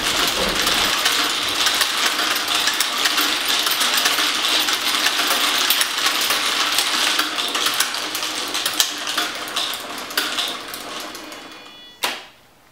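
Many small balls pattering down through a kinetic sculpture of acrylic, metal and wood, a dense rain of tiny clicks and clatters. The patter thins out and fades over the last couple of seconds.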